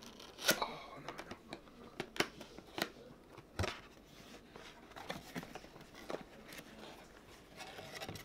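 Cardboard camera box being opened by hand: scattered short snaps and scrapes as the top flap is worked loose and lifted, with some rustling of the cardboard in between.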